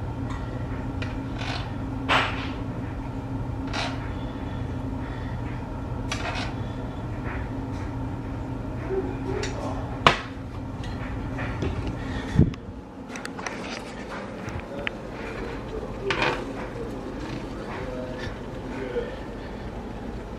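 A metal spoon and pan knock and clink against a plate as chili is spooned onto hot dogs. Under them runs a steady low hum that stops about twelve seconds in, just after a sharp knock.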